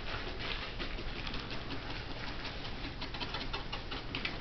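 Quick, irregular light clicks and rustling from hands working felting wool, foam pads and small craft parts at a table.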